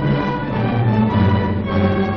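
Orchestral newsreel score: held chords with a deep sustained bass note coming in about a second in.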